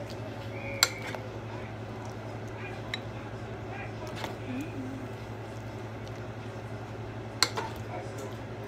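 Cooking utensil clinking against a pot twice, once about a second in and again near the end, over a steady low hum.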